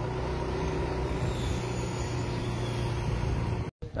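A vehicle engine running steadily with a low hum, cutting off suddenly near the end.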